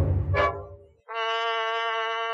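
Edited-in sound effects: a deep hit that fades out within the first half second, then after a short gap a steady, buzzy electronic tone held for about a second and a half.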